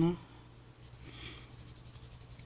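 Coloured pencil shading on a colouring-book page: a faint, light scratching of the pencil lead on paper in short repeated strokes.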